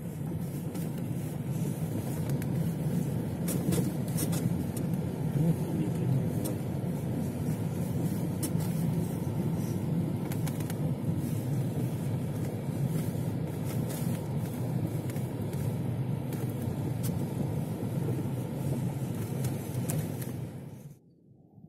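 A car driving along a snow-covered street, with a steady low rumble of engine and tyres.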